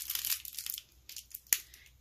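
Plastic packaging crinkling and rustling in the hands while a small metal heart piece is handled, dying away after about a second, then one sharp click.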